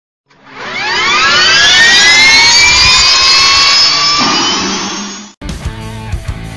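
A jet turbine spooling up: a loud whine of several tones that rises steeply in pitch, levels off, and cuts off abruptly near the end.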